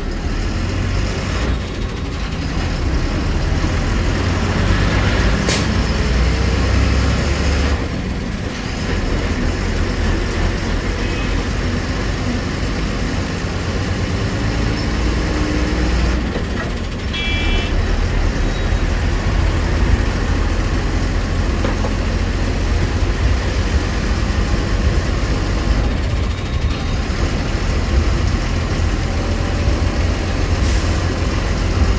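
Engine rumble and road noise from inside a bus cabin while it drives through traffic, steady and loud with a deep low drone. A short high beep sounds once, about 17 seconds in.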